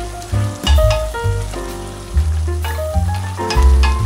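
Beef cubes and onion sizzling as they fry in lard in a pot, stirred with a spoon, with scraping strokes. Background music with a prominent bass line and changing notes plays over it and is the loudest sound.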